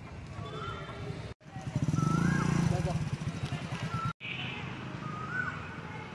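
Street ambience: a bird's short rising-and-falling whistled call repeats about four times, with a louder low rumble through the middle, broken off by two sudden audio cuts.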